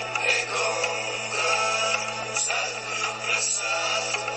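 Meditation music: sung vocals held in long notes over a steady low drone.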